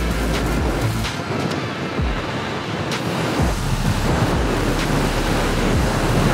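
Wind rushing over a helmet-mounted camera microphone on a motorcycle at highway speed: a steady rush of noise, with the deepest part of it briefly easing between about one and three seconds in.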